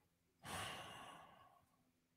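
A person's long sigh, one breathy exhale starting about half a second in and fading away over about a second.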